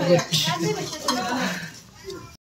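Cutlery clinking and scraping on a ceramic plate during a meal, with voices talking over it.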